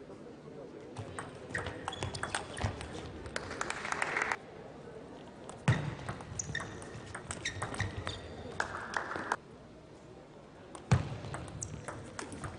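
Table tennis doubles rallies: the ball clicking off paddles and table in quick runs of sharp ticks, with two louder knocks about six and eleven seconds in. Short voice-like bursts, typical of players shouting between shots, come near the start and again about nine seconds in.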